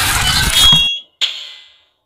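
Cartoon sound effect of ice shattering: a loud, noisy crash that dies away about a second in, with a high ringing tone near its end, followed by a short, fading high-pitched ring.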